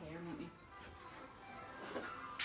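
A short voice sound at the start, then faint background music and room sound.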